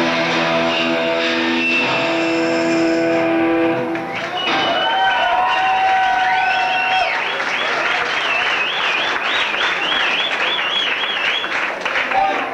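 A live rock band's final chord ringing out, then, about four seconds in, the audience applauding and cheering, with loud warbling whistles rising and falling over the crowd noise.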